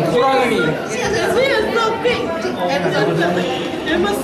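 Several people talking at once, indistinct chatter in a room.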